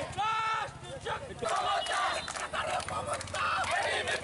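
Crowd of protesters shouting slogans: one loud held shout that rises and falls at the start, then many voices yelling together.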